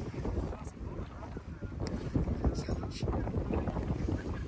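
Wind buffeting the microphone: a steady low rumble, with faint indistinct voices behind it.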